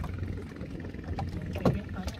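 Plastic fish crates being handled, with a few faint knocks and rattles over a steady low hum. A brief sharper sound comes near the end.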